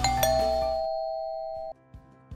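A two-note ding-dong doorbell chime, a higher note then a lower one a quarter second later, ringing on and cutting off suddenly near the end. Background music plays under it and drops away about halfway through.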